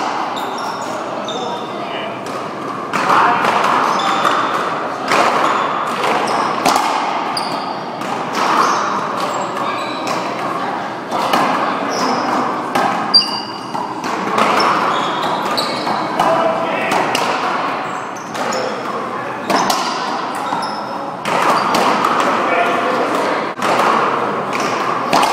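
One-wall racquetball rally: repeated sharp smacks of the ball off racquets, the front wall and the floor, echoing in a large hall, over background voices.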